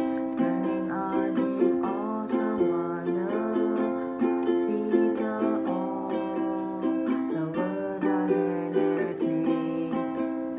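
Ukulele strummed in a steady repeating down-and-up strum pattern, with the chord changing every couple of seconds.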